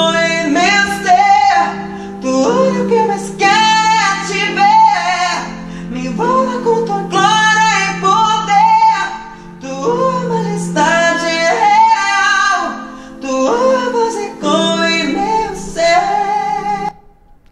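A male singer singing a slow song in a high register, accompanying himself on piano. Several sung phrases follow one another with short breaths between them, over steady sustained chords.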